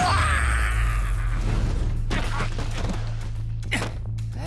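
Cartoon fight sound effects over background music with a steady low bass: a loud impact with a crackling electric burst at the start that fades over the next second or so, then a few sharper hits later on.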